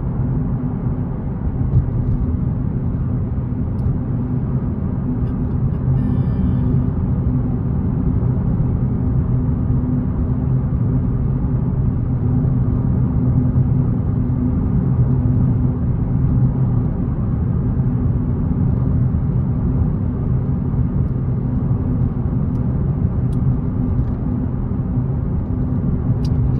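Steady low drone of engine and road noise inside a Ford car's cabin, cruising at a constant 45 to 50 mph on a dual carriageway with no braking or acceleration.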